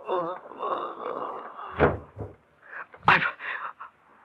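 A man's drawn-out, wavering moan as the stabbed victim dies, followed by a few sharp, gasping breaths.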